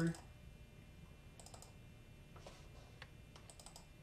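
Faint computer mouse clicks: a quick cluster of clicks about a second and a half in and more near the end, as folders are double-clicked open in a file browser.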